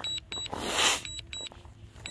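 DJI remote controller beeping in short double beeps, about once a second, the alert it gives while the drone is returning to home. A brief rush of noise, like a breath or a gust on the microphone, comes about half a second in.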